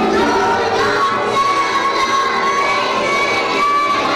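Large children's choir singing loudly together, holding one long high note for about three seconds.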